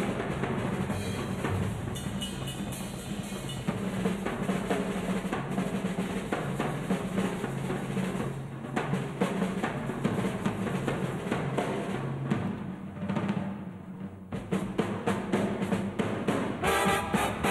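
Jazz drum kit solo: rapid snare rolls and strokes with bass drum and cymbals. It dips quieter for a moment about three-quarters of the way through, then builds again.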